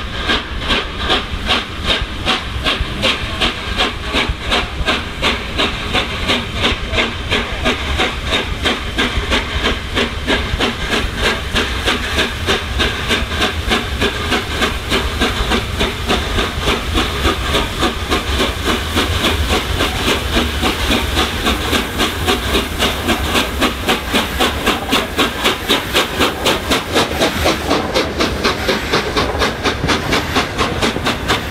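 Peppercorn A1 Pacific steam locomotive 60163 Tornado's three-cylinder exhaust beating as it pulls away with its train, the chuffs steadily quickening as it gains speed. Steam hisses under the beats.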